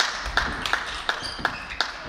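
Table tennis balls clicking off bats and table tops in uneven, overlapping rhythms, about nine sharp pops in two seconds from rallies on several tables at once.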